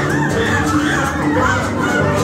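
A group of children shouting and cheering, with music playing underneath.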